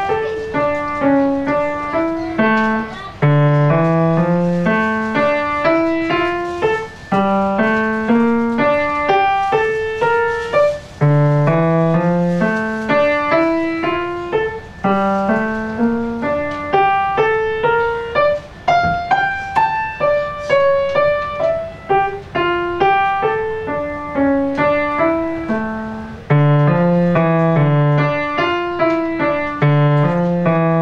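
Grand piano played solo: a continuous flow of quick broken-chord figures over low bass notes that come back every few seconds.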